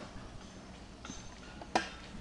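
Faint outdoor background with a single sharp click near the end.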